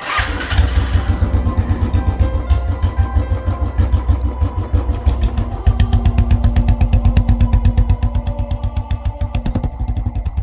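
Motorcycle engine starting with a sudden burst, then running with an even, fast thump of about ten beats a second, with music playing over it.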